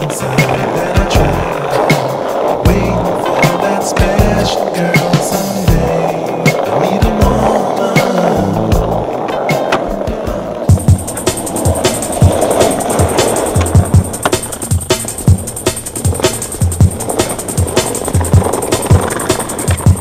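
Skateboard wheels rolling on pavement and the board clacking during street tricks, mixed under a music track. About halfway through, the music changes to a new section with sharp, regular drum hits.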